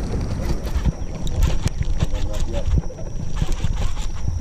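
Rumbling handling noise on the camera's microphone with many small, irregular knocks and clicks as hands move close around it, over a faint steady high tone.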